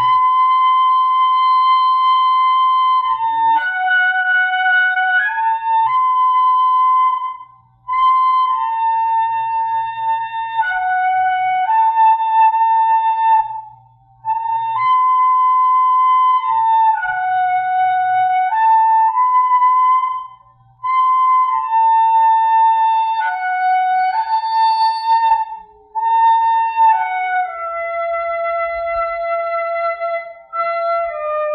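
Slow instrumental intro melody in a flute tone: a single line of notes, each held about a second and stepping up and down, in phrases broken by brief pauses.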